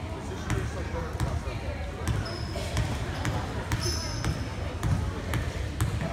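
A basketball bounced over and over on a hardwood gym floor, about two bounces a second, as a player dribbles at the free-throw line before her shot. Each bounce echoes in the hall.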